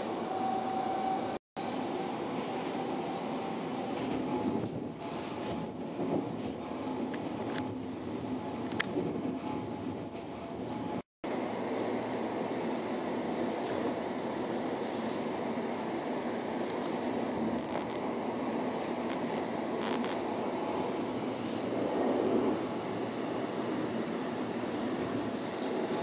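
Steady running noise inside a moving passenger train carriage: the rumble of wheels on the rails. The sound cuts out completely for a split second twice, about a second and a half in and near the middle.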